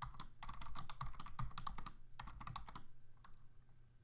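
Typing on a computer keyboard: a quick run of keystrokes that stops about three seconds in.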